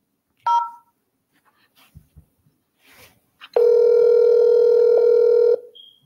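Telephone line heard over the call: a short keypad beep about half a second in, then one steady two-second ringback ring as the call is put through to an extension.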